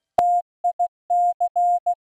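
Morse code beeps at one steady pitch spelling out T-I-C: a dash, two dots, then dash-dot-dash-dot. The first beep begins with a sharp click.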